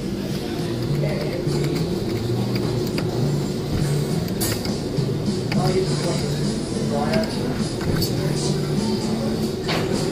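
Arcade background din: a simple electronic machine tune in steady stepped tones, with indistinct voices and a few faint clicks.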